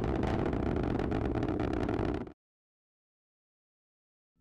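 Atlas V rocket's RD-180 first-stage engine during ascent: a steady rushing noise with fine crackling, which cuts off suddenly a little over two seconds in.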